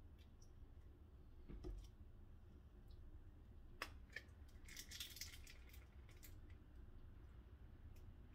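Mostly near silence with a few faint plastic clicks and taps from handling a squeeze bottle of caramel sauce: a sharper click a little before four seconds in and a short cluster of them about a second later.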